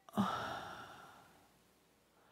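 A woman sighs: a single breathy exhale that starts loud and fades out over about a second.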